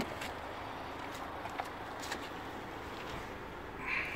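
Faint, steady background rumble and hiss, with a few light clicks from the camera being handled.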